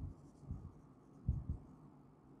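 Marker writing on a whiteboard: faint strokes with a few soft taps, one about half a second in and two close together around a second and a half in.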